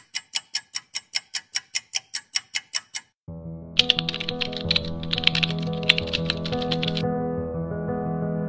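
Typing sound effect: a fast, evenly spaced run of keystroke clicks, about five a second, for about three seconds. After a brief gap, music with sustained tones begins, with more keystroke clicks over it as a web address is typed.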